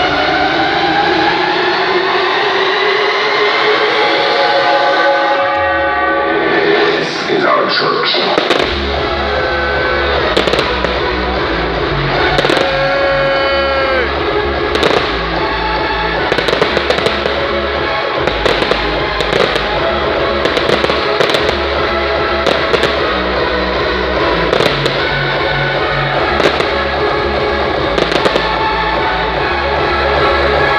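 Fireworks bursting in an irregular series of sharp bangs over loud electronic dance music from a festival stage. The music builds with rising synth tones for the first few seconds, then a heavy bass beat comes back in about eight seconds in.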